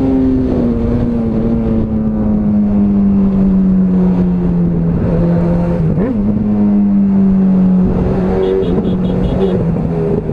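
Sport motorcycle engine running steadily under way at cruising revs, its pitch easing down a little over the first few seconds and then holding, with a brief wobble about six seconds in.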